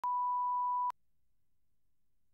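Steady single-pitch line-up test tone of the kind laid with colour bars at the head of a broadcast videotape, used to set audio levels. It lasts just under a second and cuts off sharply.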